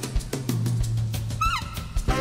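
Live band music where the saxophone line breaks off, leaving the drum kit beating steadily under a held low electric bass note. A brief falling pitched slide comes near the end, before the band comes back in full.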